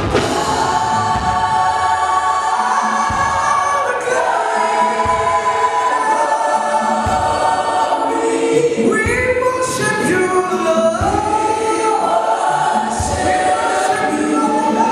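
Live gospel worship song: several voices singing together over a band of bass guitar, keyboard and acoustic guitar, with low bass notes about once a second.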